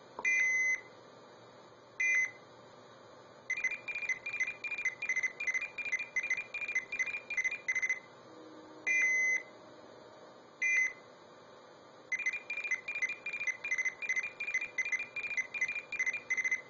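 Arduino blue box playing a stored CCITT No. 4 (SS4) signalling sequence through an old telephone earpiece: short seizure and key-pulse tones at the start, then fast trains of short high beeps, about four or five a second, carrying the coded digits, with a longer tone near the middle.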